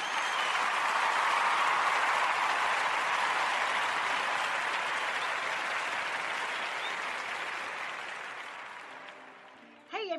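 Audience applause that swells in the first second or two, then slowly fades away and is nearly gone by the end.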